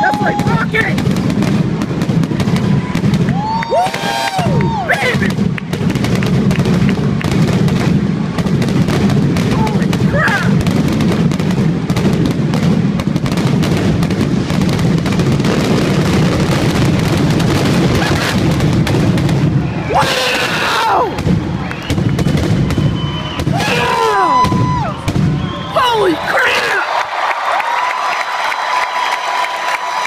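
Fireworks finale: a rapid, continuous barrage of aerial shell bursts with a deep rumble of booms, laced with high whistles. About four seconds before the end the booms stop, and crowd cheering and whistling carry on.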